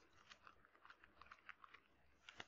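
Near silence: room tone with faint, scattered small clicks.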